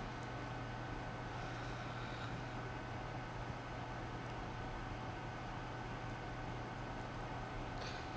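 Steady low hum with an even hiss from running equipment, unchanging throughout, with no distinct clicks or other events.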